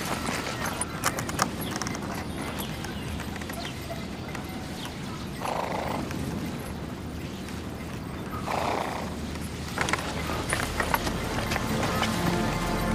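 A horse pulling a sleigh through snow: clip-clop hoofbeats, with two short calls from the horse around the middle.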